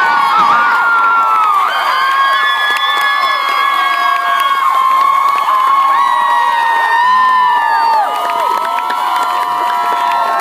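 A large crowd cheering and shouting, many high voices overlapping in long held calls.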